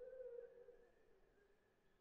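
Near silence, with one faint held instrumental note that fades away within about a second and a half.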